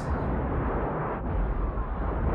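Film sound effects of meteor impacts: a continuous, dull rumble of explosions and falling debris with a heavy low end and little treble.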